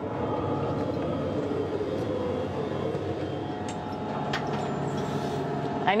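Steady hum and whir of the International Space Station's cabin ventilation fans and equipment, a constant machine drone with several held tones. A few faint clicks sound through it in the middle.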